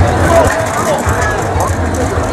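Street crowd chatter: several voices talking at once, none clearly, over a steady low rumble.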